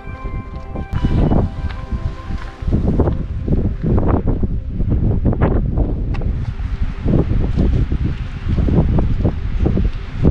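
Wind buffeting the camera microphone in uneven gusts, with rustling; background music fades out in the first second or so.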